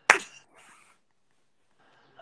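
A single sharp finger snap right at the start, dying away quickly.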